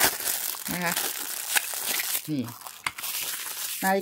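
Clear plastic packaging bag crinkling and rustling as it is handled and pulled off a watch-strap link remover tool.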